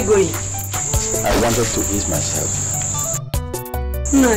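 Crickets chirring steadily in a night-time ambience, over low background music with falling swoops. The cricket sound cuts out for a moment near the end.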